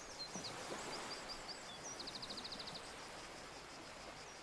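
Small birds chirping in quick, short calls, then a rapid trill of about a dozen even notes near the middle, over a faint steady hiss of outdoor ambience.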